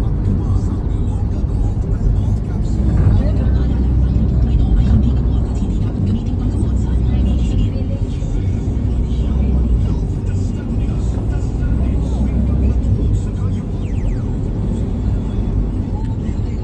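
Steady low road and engine rumble of a moving vehicle, heard from inside its cabin.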